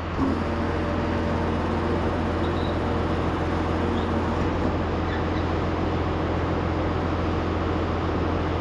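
Tractor engine running steadily, powering the feed mixer's hydraulic front conveyor as its freshly re-centered and re-tightened belt is test-run: an even, low machine hum with no knocks.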